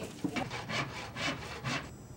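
A hand saw cutting wood with about five quick, even strokes, which stop near the end.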